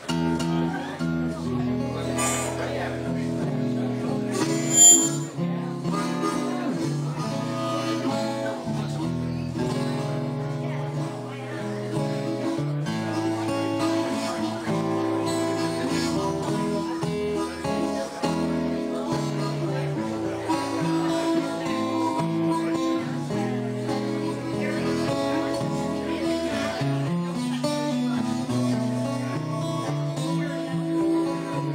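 Acoustic guitar and harmonica playing a blues together, the guitar starting right at the beginning. About five seconds in there is one brief, loud high-pitched sound.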